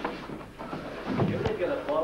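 Indistinct voices talking, with a single sharp knock about one and a half seconds in.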